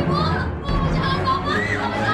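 Shrill, high-pitched voices over a background music bed with steady low notes.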